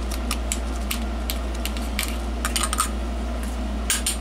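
Small metal tool scraping and clicking inside an emptied aluminium can-type electrolytic capacitor shell as the old residue is cleaned out: irregular light metallic clicks and scrapes over a steady low hum.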